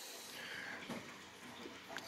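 Faint handling sounds of ignition wiring and a small plastic connector being moved on a wooden bench, with quiet room tone.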